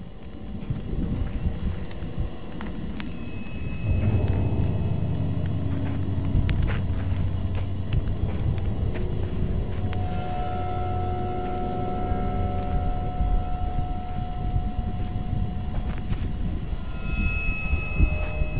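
Intro of a raw black metal album track: a low rumbling noise with scattered clicks, which grows louder about four seconds in, with held tones coming in partway through.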